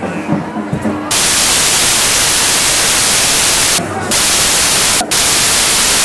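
A voice speaking for about a second, then a loud, steady static hiss that covers everything, with two brief breaks in the hiss near the end.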